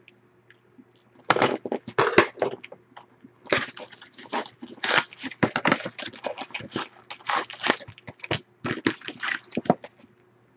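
A cardboard trading-card box being torn open by hand and its foil-wrapped packs and a paper insert pulled out: irregular crinkling and rustling. It starts about a second in and runs almost without a break from about three and a half seconds.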